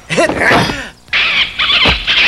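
A short shouted cry, then from about a second in a long, high-pitched screeching squeal like a monkey's cry, voiced by kung fu fighters in monkey-style combat. A brief low thud comes near the end.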